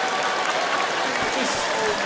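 Large live audience applauding steadily after a stand-up comedian's punchline, mixed with laughter.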